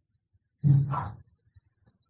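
Speech only: a single voice briefly says "All right" about half a second in.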